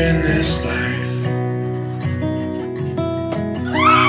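Background music, an instrumental passage of a song with steady held notes. Near the end a group of women shriek and laugh.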